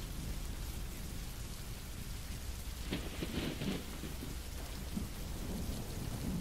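Steady rain-and-thunder ambience: an even rain hiss over a low rumble, with a few faint soft sounds partway through.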